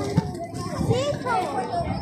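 Children's voices chattering and calling out, mixed with other people talking in the background.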